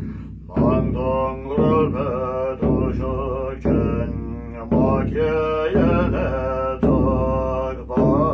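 Large Tibetan nga frame drum on a stand, struck with a curved beater about once a second in a steady beat. A man chants a ritual mantra in a sustained, melodic line over it.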